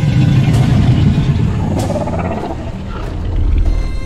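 Film soundtrack: orchestral score under a deep rumbling dinosaur growl, with a higher wavering snarl a little past halfway.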